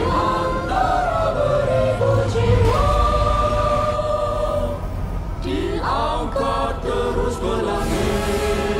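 Several voices singing in chorus in Malay over a musical backing, holding long notes: a line that steps down in pitch, then one long high held note, then a quick rising slide near the end.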